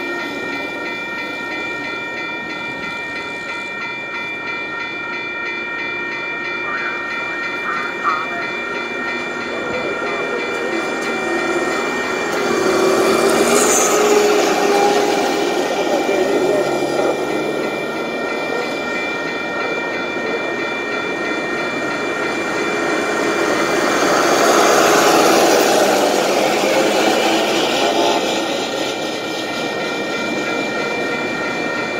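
A rail vehicle running on the nearby track, with steady high-pitched ringing tones throughout. It gets louder twice as it passes, once about halfway through and again near the end.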